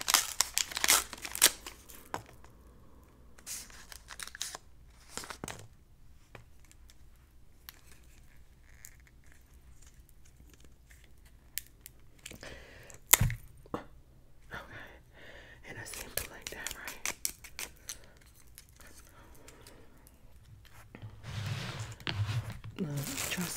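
A paper chopstick wrapper tearing and crinkling close to the microphone in the first two seconds, followed by sparse soft clicks and rustles. About 13 seconds in comes a single sharp crack as the disposable wooden chopsticks are split apart.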